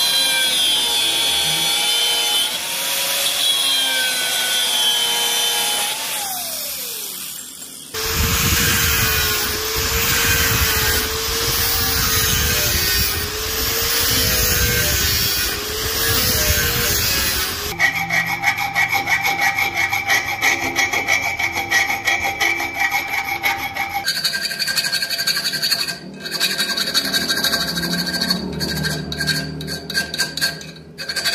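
Angle grinder with a cut-off wheel cutting into a steel chisel blank made from an old bearing, its whine wavering under load and then winding down. The grinder then grinds the blank with a green disc for about ten seconds, and in the last part the steel is rasped by hand with a round file in quick strokes.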